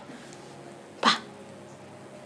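A toddler makes one brief squeal-like vocal sound about a second in.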